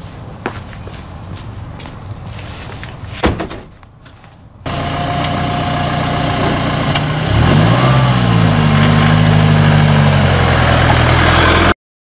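A single loud thud about three seconds in. Then a Ford Transit van's engine runs, revving up about seven seconds in and holding at the higher speed, before the sound cuts off suddenly near the end.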